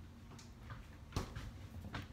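A single sharp knock about a second in, with a few fainter taps, over quiet kitchen room tone.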